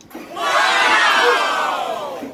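A burst of cheering, shouting voices, swelling about half a second in and fading near the end.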